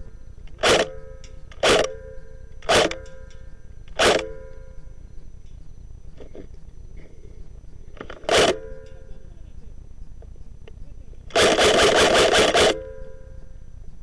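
Airsoft G36 rifle firing: four single shots about a second apart, a fifth after a pause, then a rapid full-auto burst of about eight shots lasting just over a second near the end.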